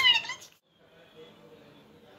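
A short, high-pitched, meow-like cry in the first half-second, then faint room noise.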